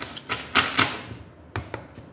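A deck of tarot cards being shuffled by hand: several quick papery slaps and riffles of the cards, the loudest a little after half a second in, with a couple more about a second and a half in.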